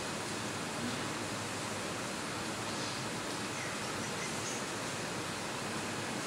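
Steady, even hiss of room tone, with no distinct sound event standing out.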